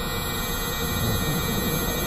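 Dense, layered experimental electronic noise and drones: a churning low rumble under many steady high tones.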